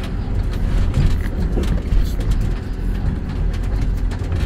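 Excavator's diesel engine running steadily, heard from inside the cab, with irregular cracks and crunches of splintering wood and debris as the bucket and thumb work the demolition pile.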